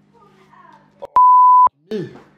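A single steady electronic censor bleep, one high pure tone lasting about half a second a little past the middle, with the sound around it cut out: an edited-in bleep over a spoken word.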